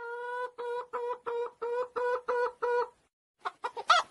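A man imitating a hen's egg-laying cackle: one long held note, then a run of about six short clucks at the same pitch that stops about three seconds in. Quicker clucking starts near the end.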